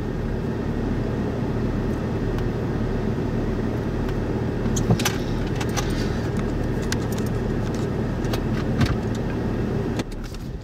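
Steady low rumble of wind and a running vehicle, with scattered sharp clicks and taps throughout. The loudest clicks come about five seconds in and again near nine seconds.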